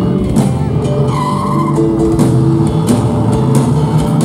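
Live rock band playing: drum kit, bass, keyboards and electric guitar, with a high wavering lead note about a second in.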